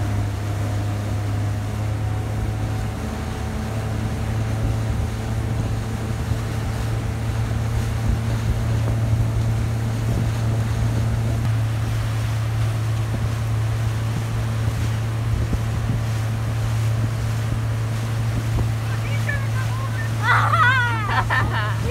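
Towing motorboat's engine running steadily at speed, a constant low drone, with wind on the microphone and the churn of the boat's wake.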